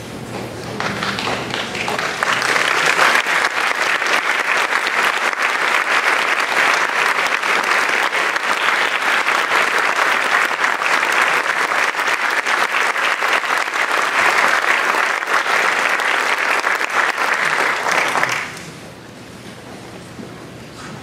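Audience applauding: a dense, steady clapping of many hands that builds over the first couple of seconds, holds, and stops abruptly near the end.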